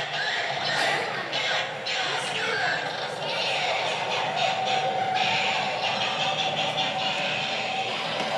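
Halloween store animatronics playing their voice and sound effects: a dense, continuous jumble with no clear words, and a steady tone for a second or two midway.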